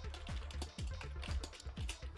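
Computer keyboard typing: a quick run of keystrokes as a name is typed, over background music.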